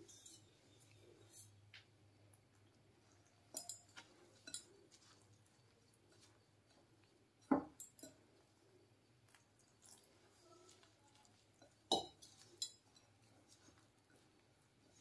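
Glass mixing bowl clinking and knocking faintly as flour dough is worked by hand in it, in three short clusters of two or three knocks each, about four seconds apart.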